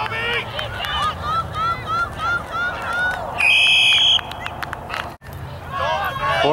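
Spectators shouting during a youth football play, with a quick run of repeated short shouts, then one referee's whistle blast of under a second about three and a half seconds in, blowing the play dead.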